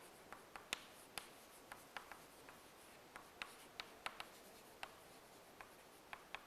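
Chalk writing on a blackboard: a string of faint, irregular taps and short scratches as the chalk strikes and drags across the board.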